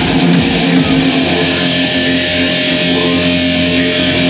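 Loud live industrial rock band music led by an electric guitar, steady and dense without a break.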